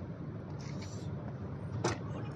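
A steady low rumble with one sharp metallic knock near the end. The rhythmic hammering on the pallet truck's load-wheel axle has stopped.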